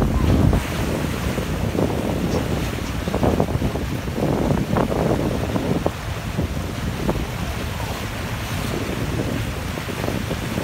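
Wind buffeting the microphone over choppy sea, with water rushing and splashing against the boat; heaviest in the first half-second, then steadier.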